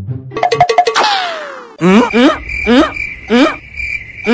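Cartoon-style comedy sound effects: a quick run of ringing dings that ends in a falling, whistle-like glide, then a rising call repeated about twice a second over a steady high tone.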